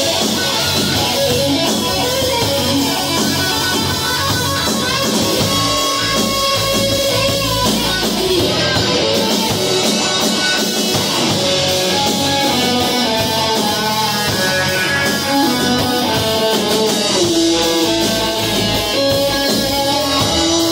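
Live rock band playing an instrumental passage on electric guitars and a drum kit, loud and continuous.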